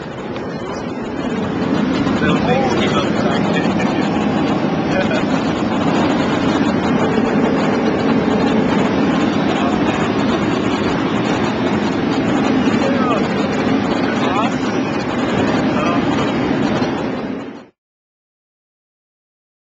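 Jet airliner heard inside the cabin from a window seat: the engines build up loud about two seconds in and hold a steady roar as the plane rolls along the runway, then the sound cuts off suddenly near the end.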